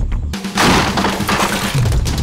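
Glass shattering: a sudden crash about a third of a second in, with breaking pieces spraying and fading over about a second, over film background music.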